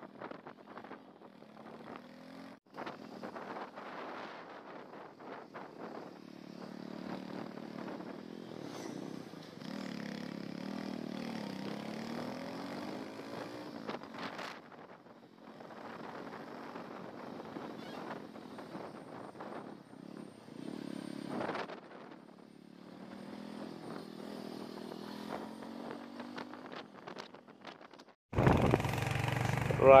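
Motorcycle engine running under way, its pitch rising several times as the bike speeds up. Near the end the sound turns abruptly louder.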